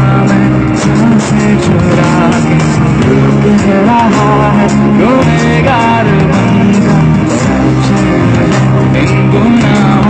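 A live pop band playing loud, with a singer's voice through the microphone; a few sliding sung or guitar notes come near the middle.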